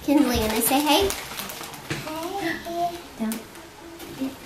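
Speech only: a young child's voice talking indistinctly in two short stretches.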